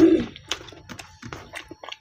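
Close-up chewing and mouth sounds of a person eating with his hands: a brief louder low sound at the start, then a string of short wet clicks and smacks.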